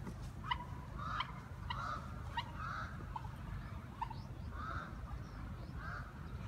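Birds calling in short, repeated notes, a few a second, over a steady low hum of city traffic.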